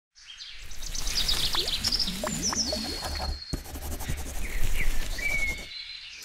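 Intro sound bed of bird-like chirps and whistled pitch glides over a low rumble, with a sharp click about halfway through; it cuts off abruptly just before the end.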